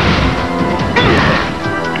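Cartoon fight sound effects: two loud crashes about a second apart over dramatic background music.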